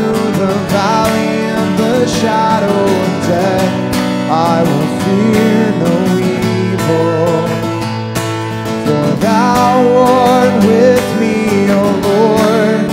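Acoustic guitar strummed in chords, with a man singing a slow melody over it.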